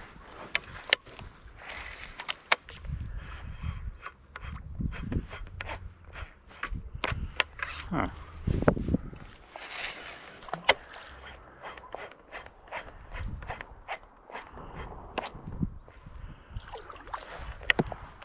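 Scattered, irregular clicks and knocks from handling a fishing rod and baitcasting reel while working a lure, with uneven gusts of wind rumbling on the camera microphone.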